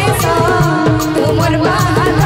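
Sambalpuri devotional song (bhajan) played live: keyboard melody over a steady tabla and octapad beat, with a woman singing.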